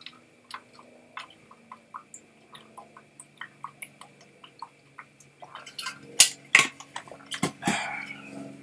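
A person drinking from a water bottle: a run of small gulps and swallows, about three a second, followed near the end by a few louder, sharper sounds.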